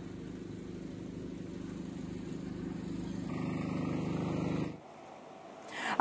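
A low, rapidly pulsing rumble that grows steadily louder, then cuts off abruptly about five seconds in, leaving a faint hum.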